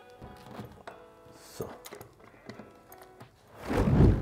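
Heel lever of an automatic crampon snapping shut onto a mountaineering boot's heel welt, with a dull plop near the end that shows the crampon is seated. A few small clicks of the crampon's metal being handled come before it.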